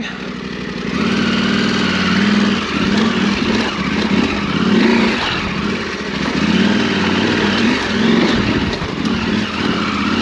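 Off-road motorcycle engine working under changing throttle, its pitch rising and falling again and again, on a rocky trail climb.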